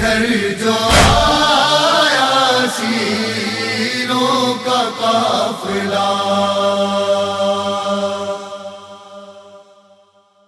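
Noha recitation: a male voice chanting a mournful elegy, with one heavy matam (chest-beating) thump about a second in. The voice gives way to a held drone that fades out over the last two seconds.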